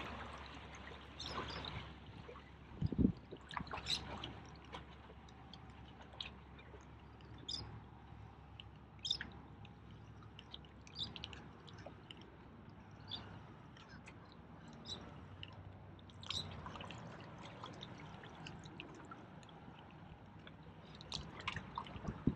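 Faint small waves lapping and dripping against shoreline rocks, with scattered light splashes and ticks throughout. A single low thump about three seconds in.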